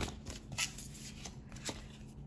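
Paper and card album inserts being leafed through and slid out by hand: a run of short, crisp paper rustles and slides.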